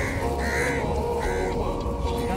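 A crow cawing three times in quick succession, over background music.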